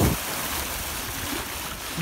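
Steady rush of water along the bow of a moving boat, mixed with wind on the microphone.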